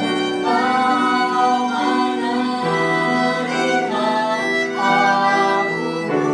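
A woman and a man singing a melody together in long held notes, moving to a new note about every second.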